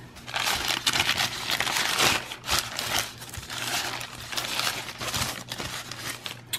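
Thin paper burrito wrapper crinkling and crackling as it is unfolded by hand. It starts a moment in and is loudest for the first few seconds, then goes on in scattered crinkles.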